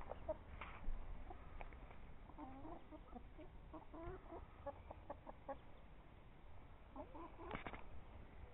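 A flock of chickens clucking quietly, a few short low calls at a time, with scattered small clicks and a brief louder cluster of clicks near the end.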